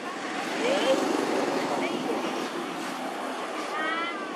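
Outdoor ambience: a steady wash of background noise, with short high chirping calls scattered through it and a brief pitched squealing call just before the end.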